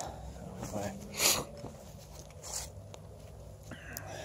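A man says a brief "okay", then soft breaths and rustling steps on grass as he moves the camera back. A faint steady low hum runs underneath.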